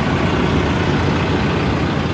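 Cummins ISX inline-six diesel engine of an International LoneStar semi truck idling steadily at operating temperature.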